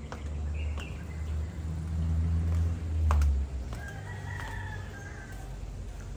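A rooster crowing once, faintly, its call held for about a second and a half in the second half, over a low rumble that swells about three seconds in.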